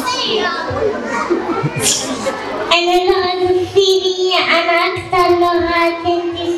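Murmured chatter, then from about three seconds in a young girl singing long, steady notes through a microphone, with the echo of a large hall.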